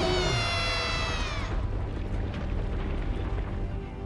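A lion cub's small, high-pitched roar lasting about a second and a half, rising at the start and dropping away at the end, over orchestral film music with a steady low rumble.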